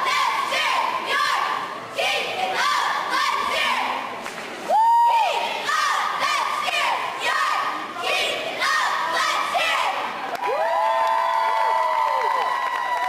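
A girls' cheerleading squad shouting a cheer in unison, in short chanted phrases that come every second or two, ending with several voices holding a long drawn-out shout.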